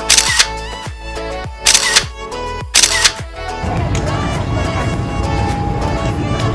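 Background pop music with three camera shutter sound effects in the first three seconds, each a short bright click about a second and a half apart.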